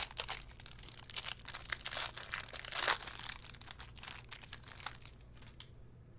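Clear plastic wrapper of a trading-card pack crinkling and tearing as it is pulled open by hand, in a run of irregular crackles that thins out about five seconds in.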